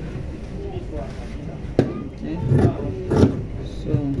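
A steady low background rumble, with one sharp click a little under two seconds in, followed by a voice talking in the second half.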